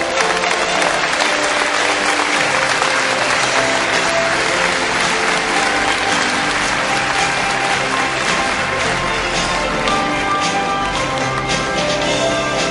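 An audience applauding over music; the applause is heaviest in the first few seconds and thins out through the second half while the music carries on.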